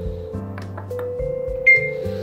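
Background music with a steady bass line. Near the end comes a single loud, high electronic ding, an elevator's arrival chime.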